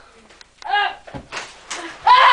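Children scuffling: a short vocal cry, then a sharp thump and rustling as a boy tumbles off a beanbag onto the floor.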